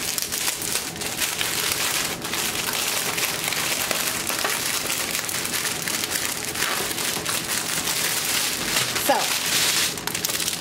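Plastic packaging crinkling and rustling without a break as small bags of diamond painting drills are handled and unpacked close to the microphone.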